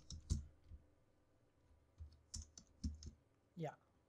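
Typing on a computer keyboard: a few keystrokes near the start, a pause of about a second, then another run of keystrokes. A brief murmured voice sound comes near the end.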